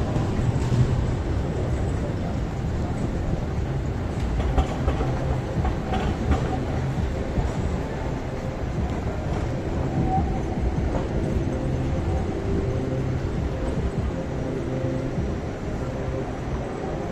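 Trams running on street track: a steady low rumble of wheels on rails with scattered sharp clicks, and a faint steady hum in the second half as a tram comes past close by.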